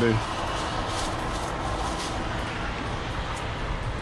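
Steady rumbling outdoor background noise, with light rustling and handling of a thin plastic bag.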